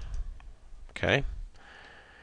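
Two light computer mouse clicks as a download button is clicked, followed about a second later by a spoken 'okay'.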